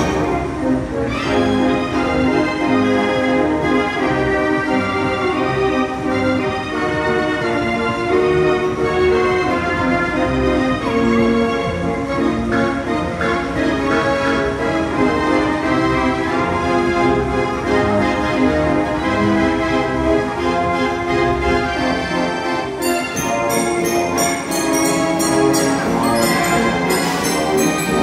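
Fairground organ music from the galloper carousel, playing steadily as the ride turns. Sharp percussive beats join in near the end.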